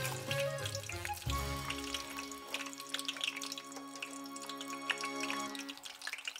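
Soft background music of long held notes over the crackle and sizzle of french fries deep-frying in oil.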